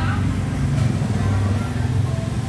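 A motor scooter's small engine running steadily close by, with people's voices over it.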